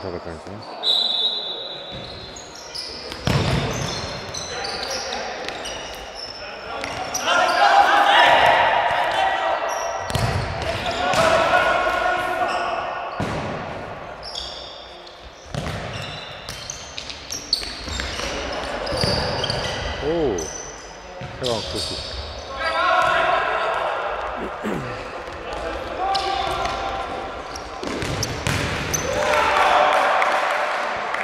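Indoor football match on a hard sports-hall floor: repeated ball kicks and bounces, echoing in the hall, with players calling out to one another and occasional short squeaks.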